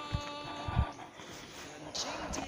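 Footsteps while walking, heard as dull low thuds about twice a second, over several steady held tones that stop about a second in.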